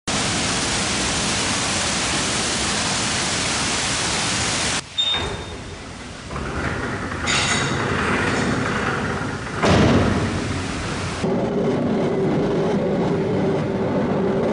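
Water pouring and splashing steadily over the buckets of a large water wheel for the first five seconds or so. After a sudden cut, the wheel-driven gearing and cable winch of a canal boat lift is heard running, ending in a steady hum with a held tone.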